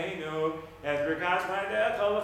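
A man chanting Hebrew prayer in the traditional prayer-leader melody (nusach), holding long sung notes. There is a short break for breath just before the one-second mark.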